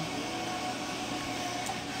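Steady room noise: an even hiss with a faint low hum, no distinct events.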